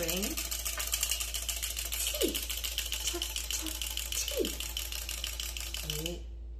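Wind-up chattering teeth toy running on a table: its clockwork spring motor whirring and the plastic jaws clattering in a fast, even rattle that fades a little as it winds down and stops right at the end.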